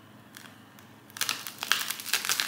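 Bite and chew into hard toasted sourdough bread topped with mashed avocado, heard as a quick run of crisp crunches starting about a second in.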